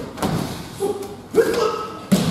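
Bodies hitting tatami mats in aikido throws and breakfalls: several thuds, the loudest one and a half seconds in and again right at the end, with short shouts among them.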